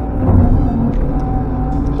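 Excavator's diesel engine running steadily under load, a continuous low rumble with a steady hum, heard from inside the cab as the bucket works in wet mud.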